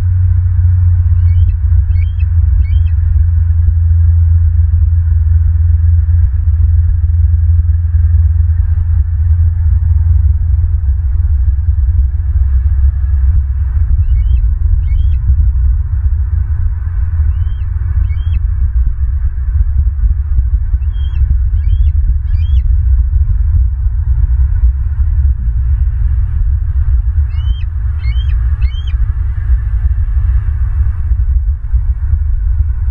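Juvenile bald eagle giving high chirping calls in short groups of two to four, about five times, over a steady low rumble.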